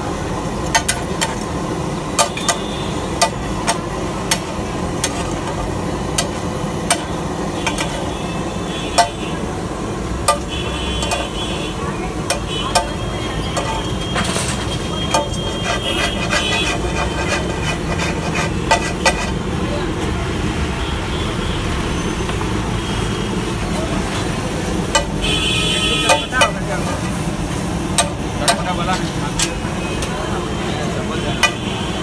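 Busy street noise: traffic running, car horns honking several times (clearest about 25 seconds in), and background voices. Over it come sharp metallic clicks and scrapes of a steel spatula on a large iron tawa griddle.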